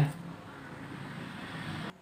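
Steady background noise with no clear event in it, which cuts off abruptly near the end.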